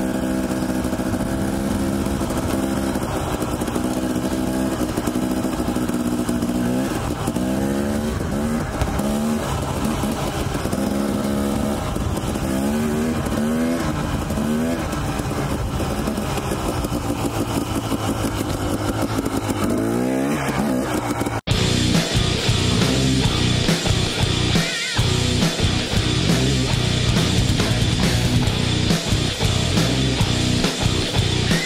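Dirt bike engine running at low trail speed, its revs rising and falling with the throttle. About two-thirds of the way through it cuts off abruptly into loud rock music with distorted guitars.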